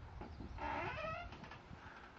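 A horse gives a short whinny, under a second long, wavering and dropping in pitch at the end.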